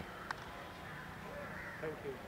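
Faint open-air background with distant bird calls, plus a single short click about a third of a second in.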